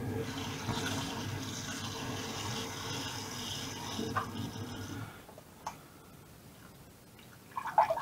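Kitchen tap running into a stainless steel saucepan, filling it over a block of instant noodles. The flow stops about five seconds in, and a single light click follows shortly after.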